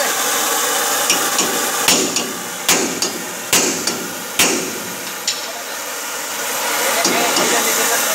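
Hammer blows on steel, about seven sharp metallic strikes with the four loudest coming roughly once a second in the middle. Under them runs the steady hiss of a gas torch heating the wheel hub to free a stuck bearing cone.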